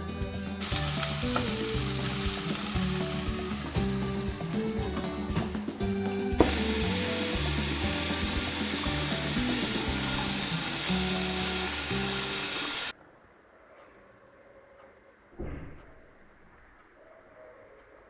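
Background music over a steady sizzle of diced potatoes frying in oil. The hiss grows louder about six seconds in, then everything cuts off abruptly about thirteen seconds in, leaving quiet room sound.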